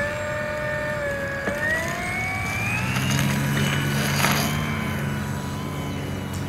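Radio-controlled cargo plane's motor and propeller throttling up for a short takeoff: a whine that climbs in pitch from about one to three seconds in, then holds steady, with a lower drone joining as the plane gets airborne.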